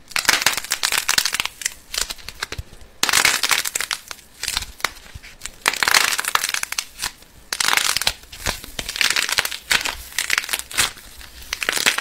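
Metallic foil crinkling and crackling as foil-wrapped balls of kinetic sand are pressed and crushed by fingers. The crackling comes in repeated bouts of a second or two.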